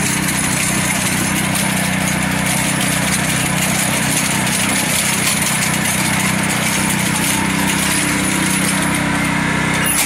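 Billy Goat self-propelled core aerator's small engine running steadily at a constant speed while the machine drives its tines into hard-packed, dry lawn.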